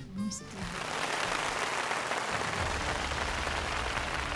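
Studio audience applauding steadily, with background music coming in underneath about halfway through.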